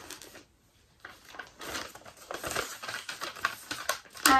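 Paper receipt being unfolded and handled, rustling and crinkling with many small crackles after a brief lull about half a second in.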